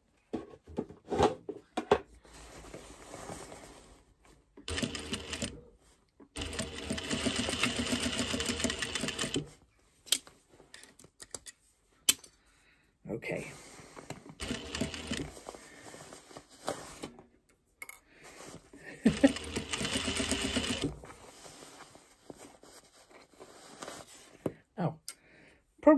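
Sewing machine stitching the seam of a feather-filled cushion pad in several short runs, the longest about three seconds, stopping and starting as the fabric is guided, with clicks and rustling of fabric and pins in the pauses.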